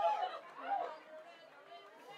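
Indistinct voices and chatter of people in a crowded room, loudest in the first second and quieter after.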